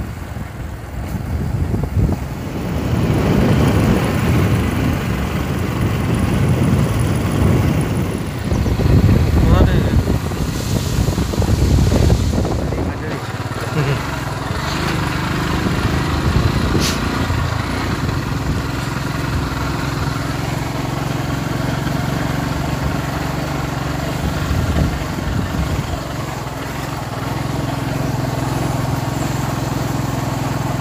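A motor vehicle heard from on board while moving: engine running under heavy wind rumble on the microphone for the first twelve seconds or so, then a steadier, slightly quieter engine hum.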